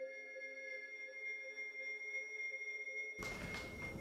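Quiet, sustained electronic tones: several steady pitches held together like a drawn-out chime. About three seconds in they stop and give way to a hiss of room noise.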